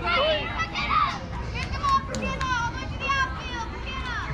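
Several high children's voices cheering and calling out over one another, as young softball players do from the dugout while a batter waits for the pitch.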